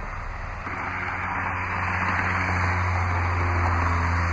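2013 Jeep Grand Cherokee's 3.6-litre Pentastar V6 idling with a steady low hum. About a second in, a rush of noise joins it and the sound slowly grows louder.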